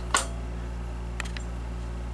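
Steady low electrical hum from powered-up radio bench equipment, with a sharp click right at the start and two faint ticks a little over a second in.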